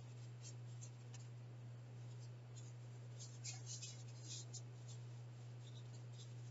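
Faint pencil scratching on paper in short, irregular strokes, with a steady low electrical hum underneath.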